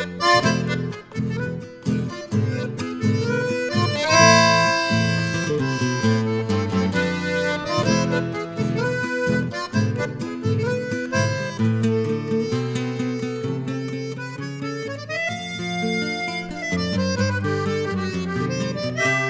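Instrumental passage of a rasguido doble: a button accordion plays the sustained melody over a strummed acoustic guitar keeping the dance's rhythm.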